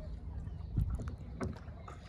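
Water sounds from a wooden shikara being paddled across a lake: water lapping and splashing, with two sharper paddle strokes a little over half a second apart near the middle, over a low rumble.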